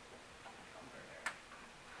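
Quiet room tone in a hall, broken by a single sharp click about a second in.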